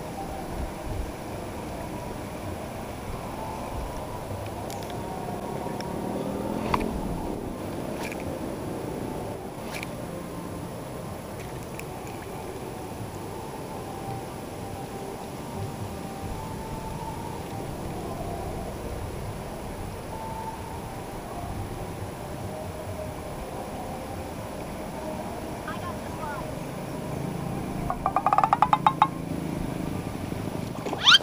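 Faint, indistinct voices talking in the background, with a few sharp clicks along the way. Near the end comes a quick run of rapid ticks.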